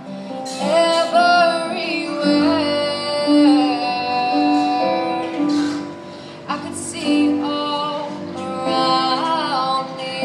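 Choir singing in harmony: low notes held steady under a higher line with vibrato. The sound dips briefly about six seconds in, then the voices come back in together.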